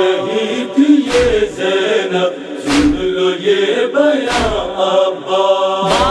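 Male backing chorus chanting a wordless noha refrain in held, slowly stepping notes, without instruments. Four deep thuds, about one every second and a half, keep the slow matam beat of chest-beating.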